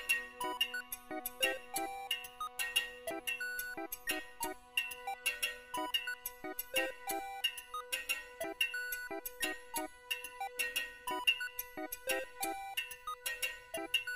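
Live-coded electronic music: a quick, irregular pattern of short beeping pitched notes and ticks over a steady held tone.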